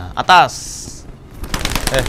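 A pigeon's wings flapping in a fast run of claps as the bird is tossed out of the hand, starting about one and a half seconds in. Before that comes a short loud call from the handler.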